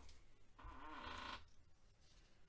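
Near silence: room tone, with one faint, short pitched sound in the middle.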